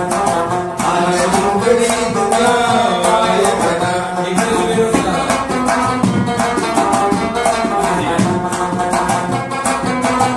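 Rabab being plucked in a fast folk melody, with steady rhythmic strikes of mangi clay-pot percussion keeping time.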